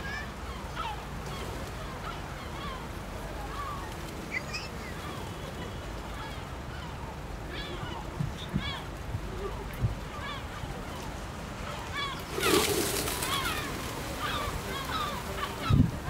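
Waterfront city ambience: many birds giving short calls over a steady low rumble of traffic, with a loud rush of wingbeats about twelve seconds in as a flock of pigeons takes off.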